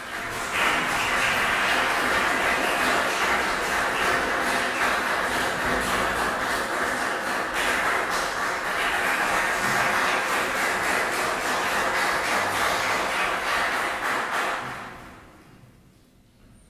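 Audience applauding steadily as the musicians come on, the applause dying away near the end.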